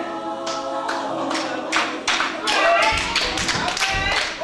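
Gospel choir singing a held chord. Hand clapping joins about half a second in and grows stronger and faster, with singing carrying on over it.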